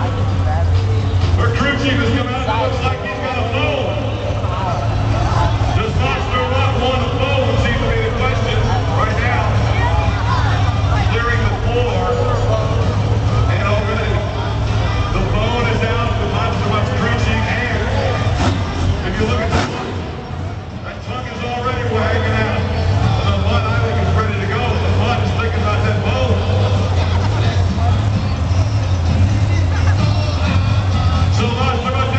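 Monster truck's supercharged V8 idling with a steady low rumble, under indistinct voices and crowd noise. The rumble dips briefly about two-thirds of the way through.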